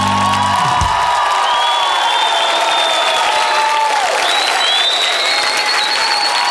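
A musical accompaniment ends: its low notes cut off under a second in, while long high held notes ring on over audience applause and cheering.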